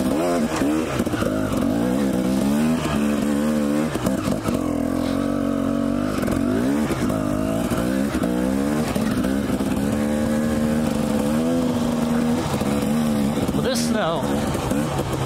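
Two-stroke Husqvarna TE 250 dirt bike engine running, its revs rising and falling with the throttle as it picks along rough trail, then holding steadier in the last few seconds.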